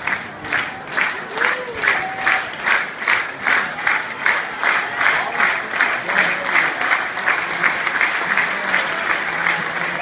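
Stadium crowd clapping in unison, a steady rhythmic slow clap of a little under three claps a second, the rhythm a triple jumper calls for from the crowd.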